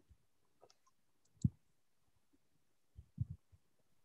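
A few short, soft clicks and knocks picked up by a computer microphone in a video call: a single, sharper knock about a second and a half in, then a quick run of three near the end, with faint room tone between.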